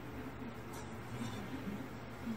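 Faint, muffled soundtrack of an anime episode playing from laptop speakers across the room, over a steady low hum.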